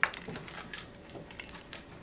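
Handling noise as people settle at a desk: a sharp click right at the start, then scattered small clicks and rustles.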